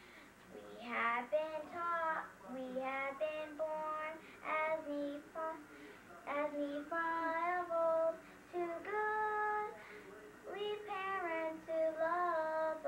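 A young girl singing a song without accompaniment, in short phrases with held notes and brief pauses between them.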